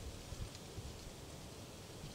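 Faint low rumble with light rustling of dry leaf litter underfoot; no distinct separate sounds.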